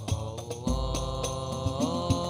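Hadrah-style sholawat performance: a sung vocal line over hand-struck frame drums (rebana). The melody bends and then rises near the end. The drums strike repeatedly, and a deep low drum boom comes in partway through.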